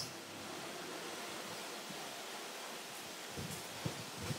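Quiet, steady background hiss of room tone, with a few faint soft knocks near the end.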